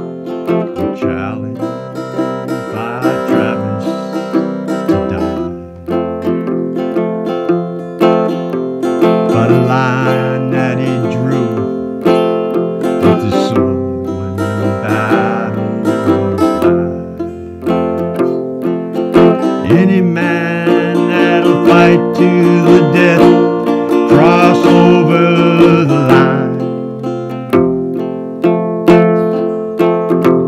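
Acoustic guitar strummed and picked, accompanying a slow song, with a voice singing over it at times.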